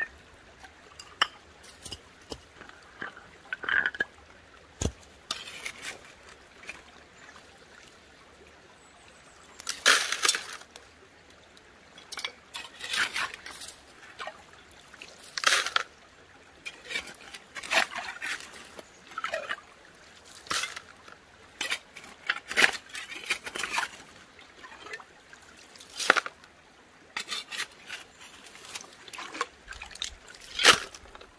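Short-handled shovel digging into wet creek gravel and rocks for gold panning, with irregular scrapes and stones clinking every second or two, some in quick clusters, as the gravel is tipped into a sifter set on a gold pan. A faint steady rush of creek water lies underneath.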